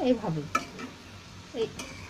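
Kata bagan pitha frying in oil in a wok with a steady low sizzle, and a metal spatula clicking against the pan about half a second in and again near the end as the pieces are turned.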